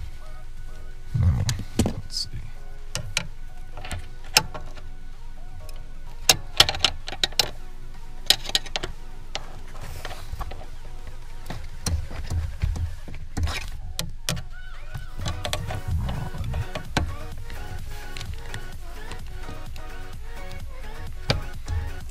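Metal clicks and knocks from a screwdriver working at the clutch pedal's assist-spring mount, scattered through the first half, with some low thuds later, over background music.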